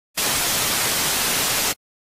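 A burst of television static hiss, about a second and a half long, that starts and cuts off abruptly.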